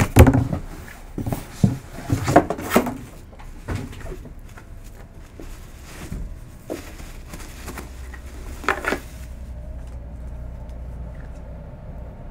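A wooden crate being opened: a quick run of knocks and scrapes in the first few seconds, then a few softer bumps as a fabric drawstring bag is lifted out and handled.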